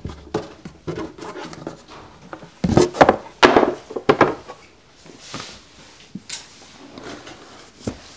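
A cloth-covered book case being opened and its bound volumes slid out and handled on a wooden bench: rubbing, scraping and knocks, with a loud run of knocks and scrapes around the middle.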